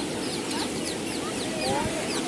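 Birds calling in a quick run of short, high chirps, about three a second, each falling in pitch, over the steady wash of surf and people's voices.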